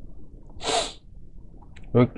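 A man draws one short, sharp breath in, a little under a second in. A brief click follows near the end.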